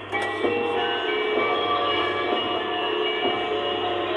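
Kiddie ride's electronic music tune playing through its small built-in speaker, a string of steady held notes that starts suddenly as the ride is set going.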